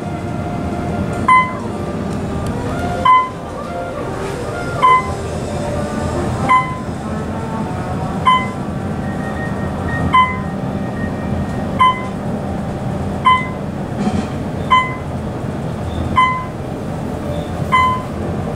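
Otis traction elevator car travelling down with a steady low ride rumble, while a short electronic beep sounds about every one and a half to two seconds, eleven times, one for each floor the car passes.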